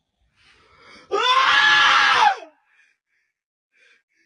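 A single loud human scream, about a second and a half long, starting about a second in and falling away in pitch as it ends.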